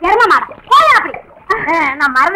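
High-pitched women's voices calling out in short bursts without clear words, with water splashing.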